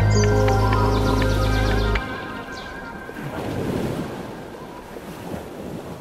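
Background music with a heavy bass that cuts off about two seconds in, leaving sea surf washing ashore, swelling and fading.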